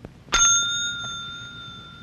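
A desk call bell struck once, about a third of a second in, ringing out with a few clear tones that slowly fade.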